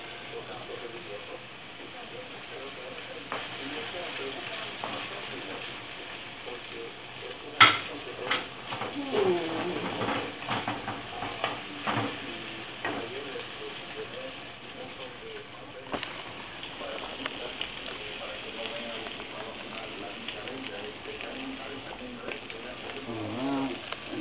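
Beaten eggs sizzling in a frying pan with tomatoes, spinach and sliced hot dog and salami. A wooden spatula scrapes and knocks against the pan now and then, with one sharp knock about seven or eight seconds in as the loudest sound.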